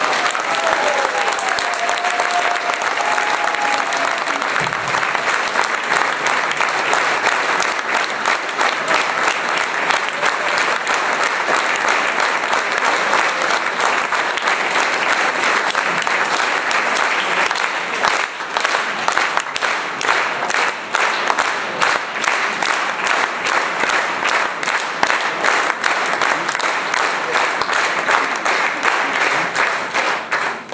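Concert audience applauding at the end of a piece: dense clapping that thins out at the very end.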